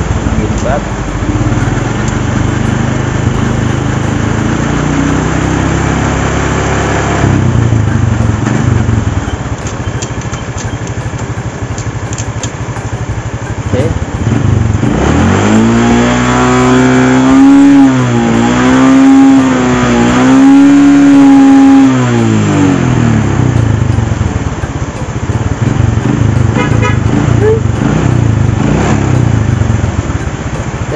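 Honda Supra X125 carburetted single-cylinder motorcycle engine running as the bike rolls and slows, then revved in neutral for several seconds around the middle: the pitch climbs quickly, wavers up and down while held high, and drops back to idle.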